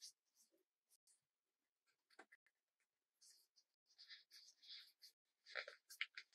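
Thin craft paper being rolled by hand into a tube: faint, intermittent papery rustles and crinkles, more frequent from about three seconds in.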